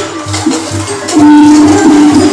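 A group of children playing percussion together: a steady beat of about three drum strokes a second with shakers rattling over it. About a second in, a loud held low note comes in over the beat.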